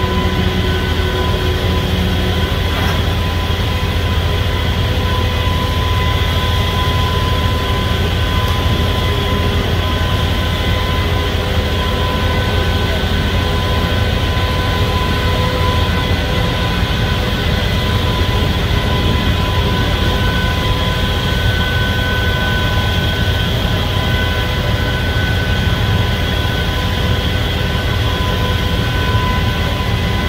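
Demolition excavator with a hydraulic shear attachment running: a steady, loud diesel and hydraulic drone with a few high steady tones over it, without clear impacts.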